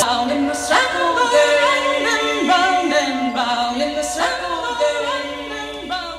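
Unaccompanied singing, several voices in harmony with gliding pitches, gradually getting quieter toward the end.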